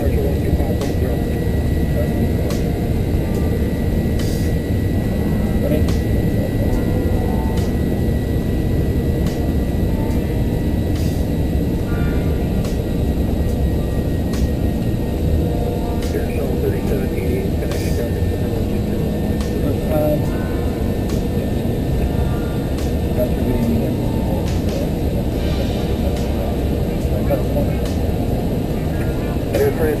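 Steady rushing noise in an Airbus A330 cockpit during the climb after takeoff: airflow and jet engine noise, even in level throughout.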